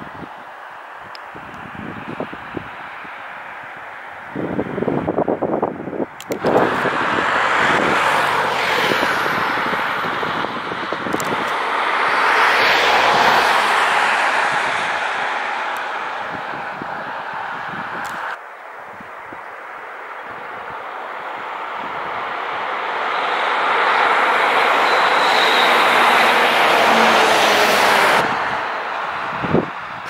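Road traffic: passing cars, their tyre and engine noise swelling and fading, loudest about halfway through and again near the end. The sound breaks off abruptly a few times.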